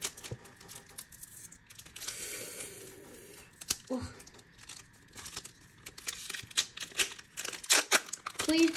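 Foil Pokémon booster pack wrapper crinkling and tearing as it is opened, with irregular crackles throughout and a denser burst of crackling near the end.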